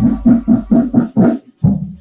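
Brass band music: a run of short, quick repeated notes, about five a second, breaking off briefly near the end before one more note.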